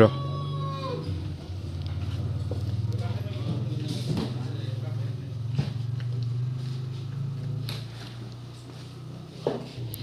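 A steady low hum with faint voices in the background; a thin high tone sounds briefly at the start and then stops.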